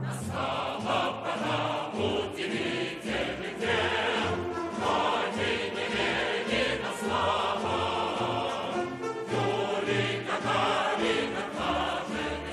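Variety orchestra playing a song, with voices singing over it and a steady pulsing bass line underneath.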